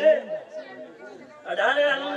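A man's voice over a microphone and PA, with crowd chatter in a quieter stretch; the amplified voice returns loud about one and a half seconds in.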